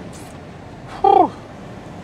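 Steady hum of a lorry cab on the move, with one short, loud pitched vocal sound about a second in that falls in pitch.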